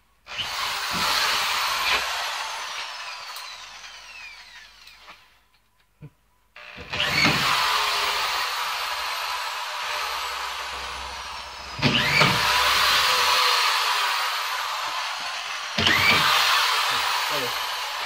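Power drill driving screws into drywall sheets: four long runs, each starting suddenly and fading away over several seconds.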